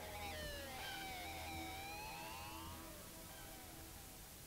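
Experimental electronic music from a 1980s cassette release fading out: several gliding tones slide up and down in pitch over a low hum and tape hiss, thinning out in the last second.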